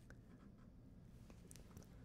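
Near silence: faint room tone with a low hum and a few faint small ticks in the second half.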